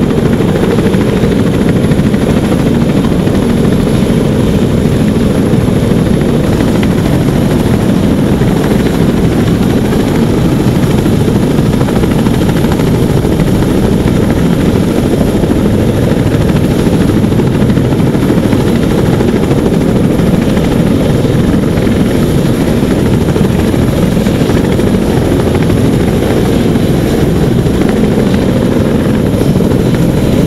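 CH-46 Sea Knight tandem-rotor helicopter running on the ground with its rotors turning: a loud, even rotor and turbine noise with no change in pitch.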